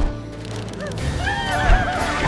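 A wavering, whinny-like cry that rises and falls several times in the second half, over orchestral film score, with a heavy thud near the end.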